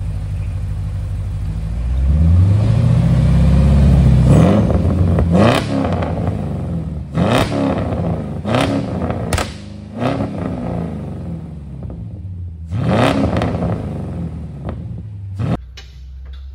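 Mercedes-Benz E55 AMG's 5.4-litre M113 V8 running through a resonator-delete exhaust, a little loud. It idles, takes one long rising rev about two seconds in, then gets several sharp throttle blips, each falling back to idle.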